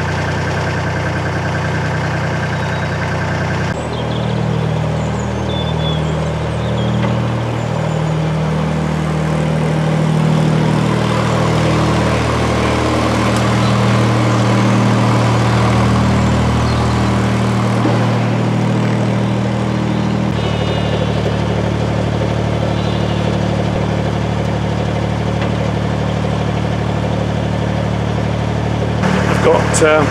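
Narrowboat's inboard diesel engine running steadily at low speed. Its throb changes character abruptly about four seconds in and again about twenty seconds in.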